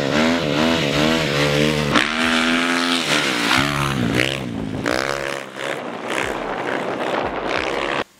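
Dirt bike engine revving hard and easing off over and over, its pitch climbing and falling, with a steadier high-revving stretch around the middle.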